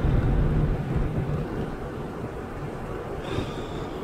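Inside a moving car: a steady low rumble of road and engine noise, easing off slightly over the few seconds.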